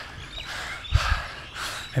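A runner's heavy, hard breathing, winded just after a fast last interval rep that he says he went out too hard on, with a couple of low thumps about a second in.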